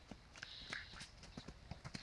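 Faint hoofbeats of a horse cantering on grass and dirt as it takes a low log jump.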